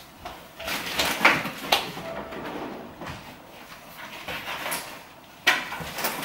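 Kitchen drawer and cupboard being opened and rummaged through: scattered knocks and clatter, with a louder noise starting near the end.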